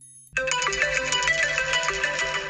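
Smartphone alarm tone ringing, a repeating melodic chime that starts suddenly about a third of a second in.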